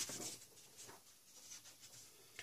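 Faint rubbing and rustling of paper: a large paper sheet being handled or marked.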